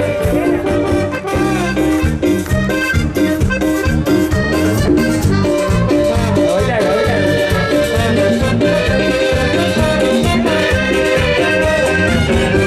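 Live cuarteto band music at a loud, even level, with a steady dance beat, a bass line and sustained melody notes.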